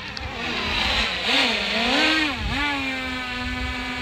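Quadcopter camera drone flying close by, its propellers whining with a pitch that wavers up and down as it manoeuvres, then holds steady near the end.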